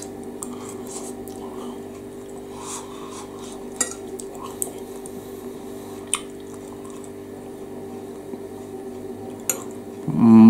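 A steady low hum with a few faint, separate clicks and taps.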